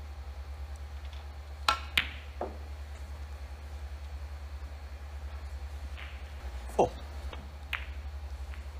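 Snooker cue tip striking the cue ball, followed about a third of a second later by a sharp click as the cue ball hits the green, which is potted. A few fainter clicks follow, over a low steady hum.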